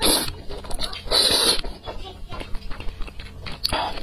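Close-miked slurping of saucy noodles: two long slurps in the first second and a half, then wet chewing with many small clicks, and another short slurp near the end.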